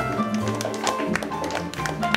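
Small jazz combo playing live: upright bass notes underneath, piano and a horn line above, and a drum kit adding frequent sharp taps and cymbal strikes.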